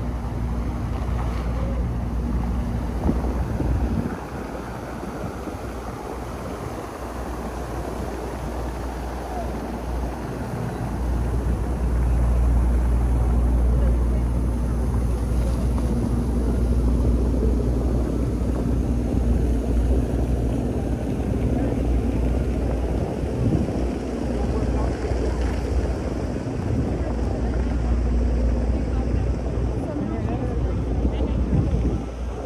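Fountain jets splashing into a stone basin as a steady rush of falling water, over a constant low engine hum of street traffic.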